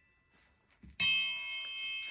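A metal chime struck once about a second in, ringing on with many high, steady tones. It is a sound effect standing in for the boy's name, Ping, in the story being read.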